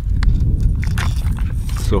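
Clear plastic tackle box being handled and opened: a scatter of short clicks and crinkles from its lid and from the soft-plastic lure packets inside. A steady low rumble runs underneath.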